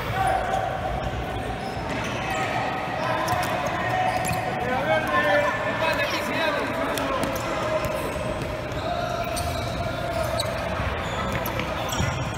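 A futsal ball being kicked and bouncing on a hard indoor court floor, a series of knocks that echo in the hall, with voices calling out over it.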